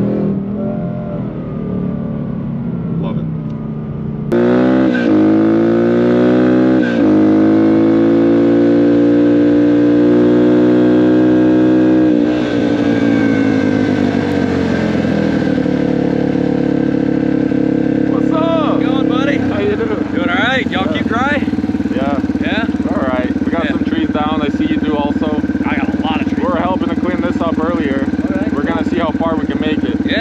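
Supercharged V8 of a 2024 Mustang Dark Horse cruising, heard inside the cabin. About four seconds in it switches abruptly to a motorcycle engine that climbs in pitch as it rides, winds down, and settles to a steady idle. People talk over the idle in the second half.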